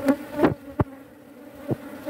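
Honeybees buzzing over an open hive frame: a steady, even hum, with four short clicks scattered through it.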